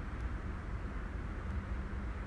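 Room tone: a steady low hum with a faint even hiss, with no other sound.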